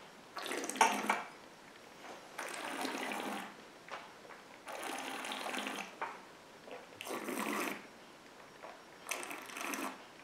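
A person breathing noisily through the nose while holding a mouthful of whisky, about five breaths roughly two seconds apart.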